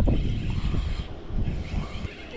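Wind buffeting the microphone: a low, rumbling noise that is loudest at first and eases off after about a second.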